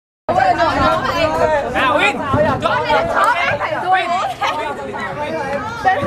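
Several young people's voices talking and calling out over one another in excited group chatter.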